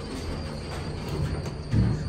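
Dover hydraulic elevator cab running down a floor: a steady low rumble and rattle with a faint steady high whine. A brief louder low sound comes near the end.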